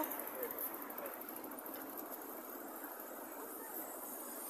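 Steady street background noise with faint voices of passers-by.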